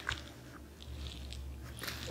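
Faint scratching of a ballpoint pen writing on a sheet of paper, with a few light clicks and paper rustles, over a low steady hum.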